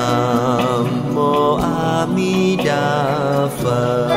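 Buddhist devotional chanting sung in long, wavering held notes over instrumental music.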